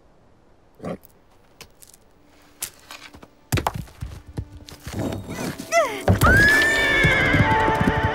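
A horse whinnying: a long, loud neigh that rises and then wavers, about six seconds in, after a heavy thud and scuffling and a few short gliding calls. Music comes in near the end.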